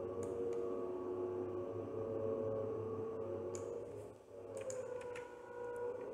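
Several sharp computer mouse clicks: a couple near the start and a quick cluster in the second half. They sit over a faint steady background tone.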